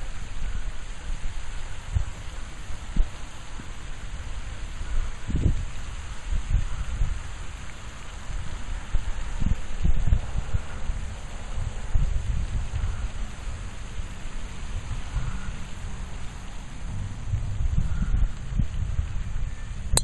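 Wind buffeting the microphone in uneven low rumbles over a steady hiss.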